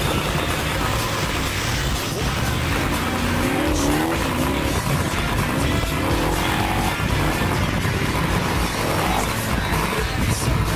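Off-road snow buggy's engine revving hard as it churns through deep snow, its pitch rising and falling a few seconds in and again near the end.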